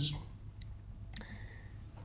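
A single sharp click about a second in, the click that advances the lecture slide, over quiet room hum.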